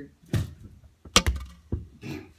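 Three sharp knocks of hard objects striking, the loudest a cluster of clacks a little over a second in.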